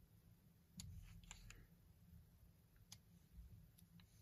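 Near silence with a few faint, scattered clicks from a manual camera lens being handled and turned in the hand.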